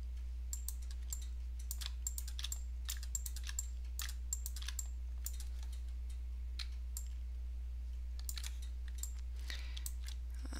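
Irregular clicking of a computer keyboard and mouse, single clicks and short clusters with gaps between them, over a steady low hum.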